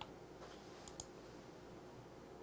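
A few faint computer-mouse clicks, one at the start and a quick pair about a second in, over quiet room tone.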